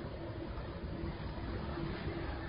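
Steady low rumble with a hiss: outdoor background noise with road vehicles moving, with no distinct impact or horn.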